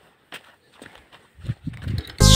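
A few faint, scattered knocks and clicks, coming closer together near the end.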